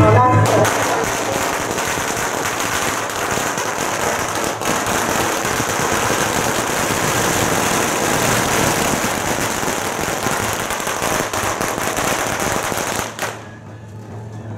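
A long string of firecrackers going off in a rapid, continuous crackle of bangs that ends abruptly near the end.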